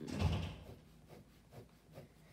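A dull thump and rub against the sketchbook near the start, then faint scratching of a ballpoint pen drawing short hatching strokes on paper.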